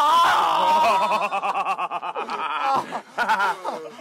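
A man yelling with a high, strained voice, breaking into loud laughter from several men with quick rhythmic pulses that die down about three seconds in.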